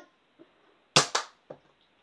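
Nerf foam-dart blaster fired about a second in: a sharp snap followed right after by a second click, then a fainter knock about half a second later.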